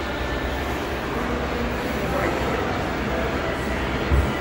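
Low, steady bass rumble from a large PA sound system being sound-checked, with faint voices underneath.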